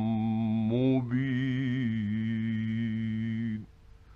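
A man's voice reciting the Quran in a slow, melodic chant, holding one long drawn-out vowel with a slight waver; the pitch shifts about a second in, and the voice stops suddenly shortly before the end.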